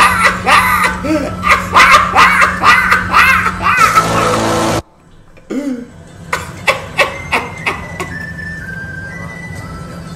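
Hearty laughter in rapid bursts over a steady low hum, which cuts off suddenly just before five seconds in; after a brief quiet the laughter starts again, with music underneath.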